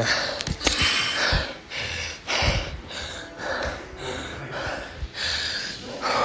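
Heavy breathing from someone winded after a workout, with a hard breath about once a second. A few knocks from the phone being handled come in between.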